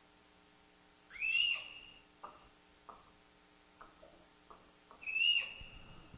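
Two short, high-pitched squeaking vocal tics about four seconds apart, each sliding up in pitch and then holding briefly, with a few faint clicks between them. They are involuntary vocalisations of Tourette syndrome.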